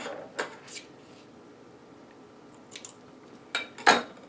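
Dry reindeer moss being pulled apart and handled by hand: a few short, soft rustles, then two louder scrapes just before the end.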